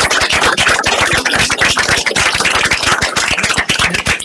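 Audience applauding loudly: dense, rapid clapping from many hands.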